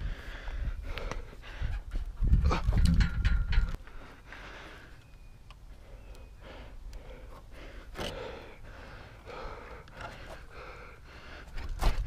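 A man breathing hard with effort as he leans over a wooden fence, with scattered clicks and knocks of handling. A louder low rumble starts about two seconds in and lasts under two seconds.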